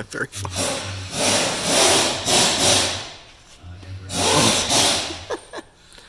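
Two long scraping, rubbing strokes of metal on metal, about two seconds and one second long, as a shaft is worked by hand inside the C7 Corvette's aluminium differential housing.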